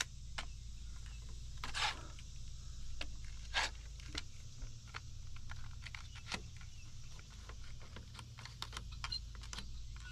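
Scattered clicks, taps and light knocks of a hand bar clamp being handled and tightened onto a wooden rafter, the clicking growing denser toward the end.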